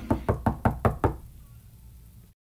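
Rapid knocking on a door, about five knocks a second, stopping a little over a second in.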